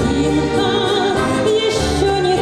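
A woman singing with vibrato into a microphone, accompanied by an orchestra.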